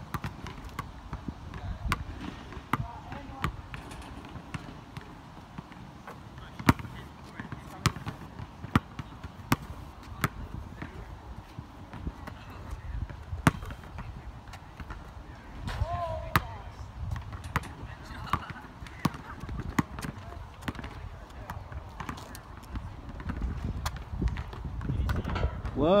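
Basketball bouncing on an asphalt court: a string of single sharp thuds at uneven intervals.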